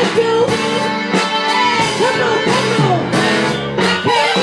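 A woman singing through a microphone over amplified band music, her voice sliding and bending between notes.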